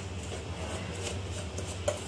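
Spoon stirring and scraping a dry mix of powdered sugar and milk powder in a stainless steel bowl, faint scratchy scraping over a steady low hum.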